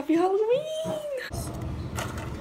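A girl's drawn-out, high vocal squeal that rises in pitch and holds for about a second, then cuts off abruptly and gives way to a steady background hum.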